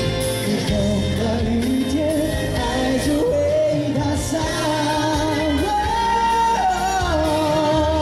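Male pop singer singing live into a handheld microphone over instrumental accompaniment, the melody moving into long held notes with vibrato in the second half.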